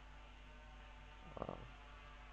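Near silence: the recording's steady low hum and room tone, with one brief faint sound about one and a half seconds in.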